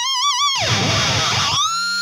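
Distorted electric guitar (ESP LTD MH-401FR through an EVH 5150 III) holding a high note with wide vibrato. About half a second in, the pitch sweeps steeply down, then glides back up near the end.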